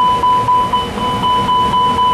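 Airbus A300-600 cockpit fire warning, a steady high-pitched warning tone, set off by the engine 2 fire test. It shows that the fire detection loops and warning are working.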